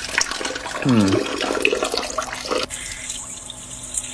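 A stream of urine splashing into the water of a toilet bowl. About two-thirds of the way through it changes abruptly to a thinner, hissier trickle. A short falling tone sounds about a second in.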